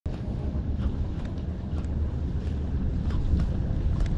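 Wind rumbling steadily on the microphone over water lapping at a small boat, with a few faint ticks.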